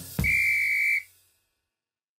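A single steady, high whistle blast over a low note, closing the drum-driven intro music. It stops about a second in.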